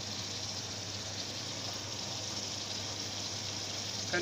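Ground meat and onions sizzling steadily in oil in a frying pan, with a faint low hum underneath.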